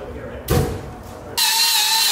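A knock about half a second in, then a handheld power tool starts up on the welded differential and runs steadily, a whine of several tones over a hiss.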